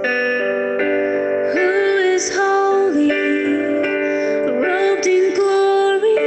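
A woman singing a slow worship song, accompanied by acoustic guitar and keyboard; her voice, with vibrato on the held notes, comes in about a second and a half in over sustained chords.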